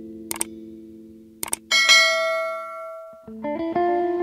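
Background guitar music overlaid with a subscribe-button sound effect: two quick mouse clicks followed by a bright bell ding that rings and fades, after which the guitar picks up again near the end.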